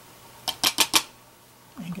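Four quick, sharp taps of a small wooden-handled stick stamp, tapped up and down to pick up ink, about half a second in.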